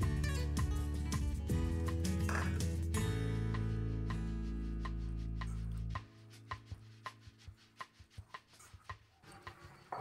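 Background music with sustained chords and a strong bass, which cuts off about six seconds in. After it, faint scattered soft clicks and squishes of a hand mixing moist minced-beef mixture with egg and breadcrumbs in a bowl.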